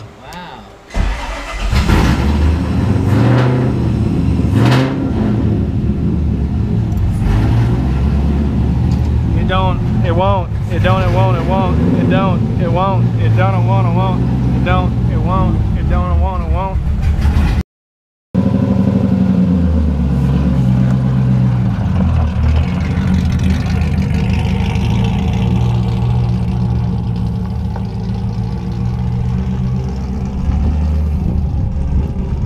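A drift car's engine cranks and catches about a second in, takes a few sharp throttle blips, then idles unevenly, its speed stepping up and down. The car is on a freshly adjusted tune whose idle control is still being sorted out.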